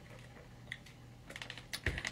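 Faint scattered clicks and light taps of small objects being handled, with a dull thump near the end.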